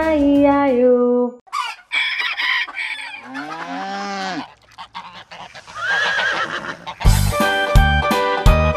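Farm-animal sound effects after a sung line ends: a honking call, then a long cow moo that rises and falls, and another call near the end before the music comes back in.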